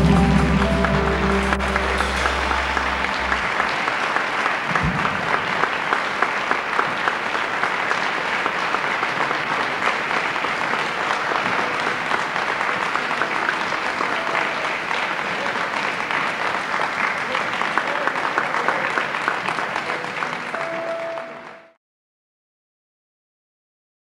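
A live band's final chord rings out and fades over the first few seconds, and an audience applauds steadily after it. The applause cuts off abruptly near the end.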